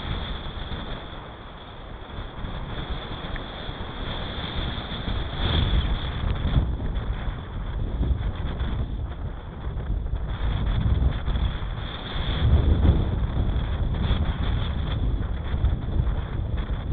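Wind buffeting an action camera's microphone on a road bike descending at speed: a rushing low rumble that swells about five seconds in and again near the end, over a steady high hiss.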